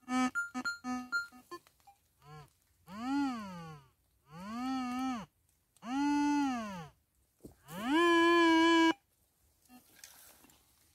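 Metal detector's audio tones: first short beeps at different pitches as the coil sweeps, then a run of long buzzy tones that each rise and fall in pitch as the coil passes back and forth over a buried target. The last tone rises and holds steady, then cuts off suddenly near the end, as when the coil is held over the target to pinpoint it.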